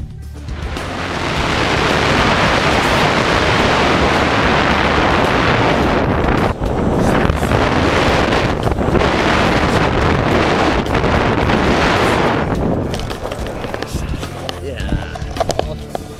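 Wind rushing over the camera's microphone during a tandem parachute descent and landing, loud and steady, dying down about thirteen seconds in. Background music plays underneath.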